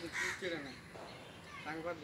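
A single harsh bird call just after the start, with brief faint voices after it.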